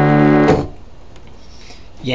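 A sustained chord on an electronic keyboard, held steady and then cut off suddenly about half a second in. A low background hum follows.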